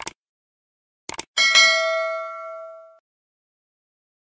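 Subscribe-button animation sound effect: a short click, then a few quick clicks about a second in, followed by a single bell ding that rings out and fades over about a second and a half.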